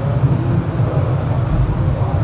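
A steady, low drone of many men's voices chanting dhikr together, with no single clear voice standing out.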